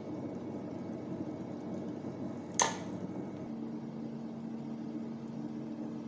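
Steady low mechanical hum of a kitchen appliance, with one sharp clink about two and a half seconds in; a second, steadier low hum takes over about a second later.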